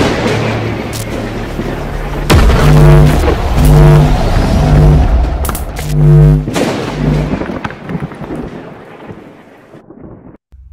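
Cinematic intro music with thunder-like cracks and heavy booming hits, a series of low held notes sounding between the cracks, fading out near the end.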